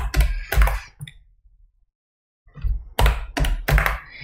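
Computer keyboard keystrokes: a few taps at the start, a pause of about a second and a half, then a quick run of five or six keystrokes near the end as the code is edited and re-run.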